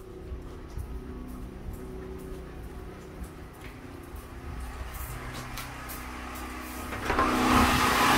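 Low steady machine hum with light clicks and rustling of the handheld phone. About seven seconds in, the running engine of the Westinghouse 9500/12500 dual-fuel portable generator grows much louder, with the generator running the house's loads.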